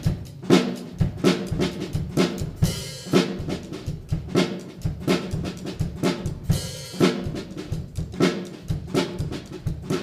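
Acoustic drum kit playing a funk beat: a steady, busy groove of kick drum, snare and hi-hat strokes, with two longer cymbal hits along the way.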